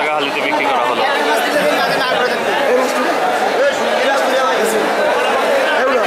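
Crowd of people talking loudly over one another: the continuous chatter of a busy, packed fish market.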